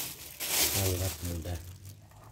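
A clear plastic bag worn over a hand crinkles in a burst of rustling about half a second in, as the hand gets ready to mix the dough. A person's voice speaks briefly at the same time.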